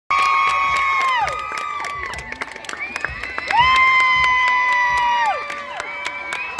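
A cheer squad of girls cheering with long, high-pitched held yells that slide down in pitch as they end, in two waves about three seconds apart, with scattered sharp claps.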